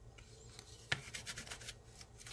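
Sticky lint roller rolled over a paper work mat to pick up loose glitter: faint rubbing, with a knock about a second in followed by a quick run of short crackles.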